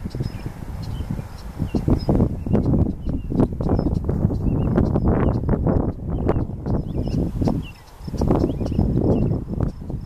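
Wind gusting over a barley field and buffeting the microphone with a deep rumble that swells and eases, dropping briefly about eight seconds in, with scattered clicks and faint high bird chirps over it.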